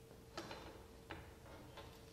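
Near silence: room tone with a faint steady tone and a few soft clicks, about four in two seconds.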